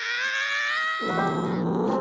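Cartoon cat character's voice: a long held, slightly wavering high note, then, from about a second in, a low rough rumbling sound.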